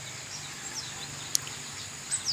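Insects droning steadily on one high note, with a few faint short bird chirps and a single sharp click a little past halfway.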